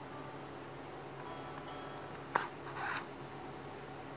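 Handling noise from hand-sewing a sandal's sole and insole with needle and cord: one sharp tap a little past the middle, followed at once by a short scraping rustle.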